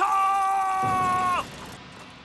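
A man's long battle cry of 'Sha!' ('Kill!'), one loud, steady, high-pitched yell held for about a second and a half that drops in pitch as it cuts off.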